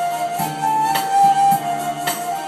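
Korg arranger keyboard playing a held melody line over chords and bass, with a drum beat of about two strokes a second from its accompaniment.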